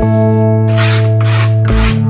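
Hand rubbing skateboard grip tape down onto the deck, two rasping strokes in the second half, over guitar music.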